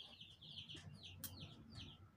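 Faint, repeated peeping of day-old chicks: short high chirps, each falling in pitch, about three or four a second.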